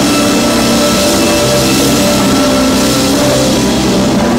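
Live band playing a song at full volume, with drum kit, electric guitar and keyboard, steady throughout.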